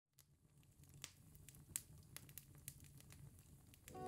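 Near silence: a faint low hum with scattered faint clicks and crackles, and music fading in at the very end.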